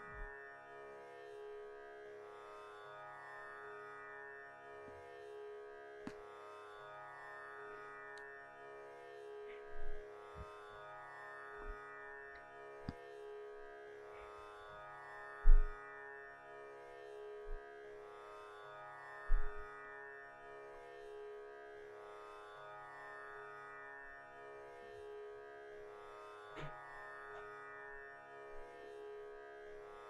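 Calm instrumental background music over a steady drone, with a few short low thumps between about ten and twenty seconds in.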